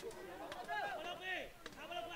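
Faint, distant shouting of players calling out on a football pitch, with a couple of faint clicks.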